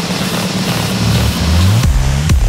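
Electronic dance music in a beatless breakdown: a hissing noise sweep over sustained bass synth notes, with the bass sliding upward about one and a half seconds in and the kick drum coming back right at the end.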